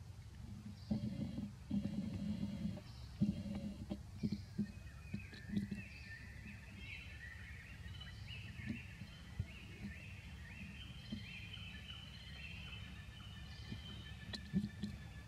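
Birds chirping repeatedly over a steady low outdoor rumble, the chirps starting about five seconds in. In the first few seconds there are soft knocks and rustles.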